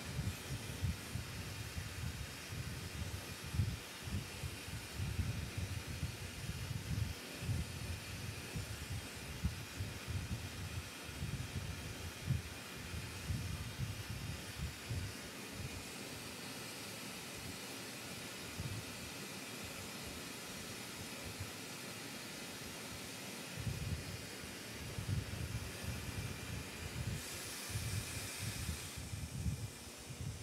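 Glassworking torch burning with a steady hiss and an uneven low rumble as borosilicate glass is heated in its flame.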